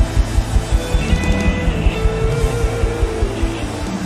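Live church band music: a steady kick-drum beat at about four beats a second under long held keyboard chords, with no singing yet.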